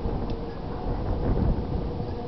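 Wind buffeting the microphone outdoors, a low rumble that swells about a second and a half in.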